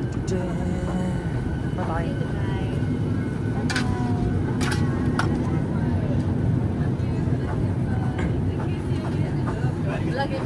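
Boeing 737 MAX 8 cabin at the gate: a steady low rumble of cabin air, with faint passenger chatter and a few sharp clicks about four to five seconds in.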